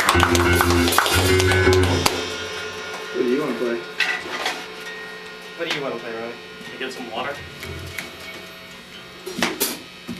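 A live rock band's electric guitars, bass and drums playing the final chords of a song, which stop about two seconds in. After that, voices talk over a quiet room hum, with a short knock near the end.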